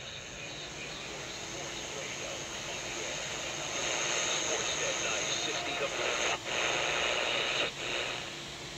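Static hiss from a Grundig AM/FM/shortwave radio tuned to an empty station. It swells about three seconds in as the radio picks up interference from the Tesla coil system that has just been switched on, and cuts out briefly twice near the end.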